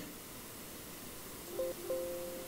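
Quiet room tone: a low steady hiss. Near the end a faint steady two-note hum starts, breaks off for a moment, then continues.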